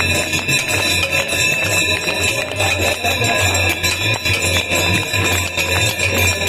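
Temple hand bells of the Ganga aarti ringing rapidly and without pause over loud amplified devotional music, with a steady low hum beneath.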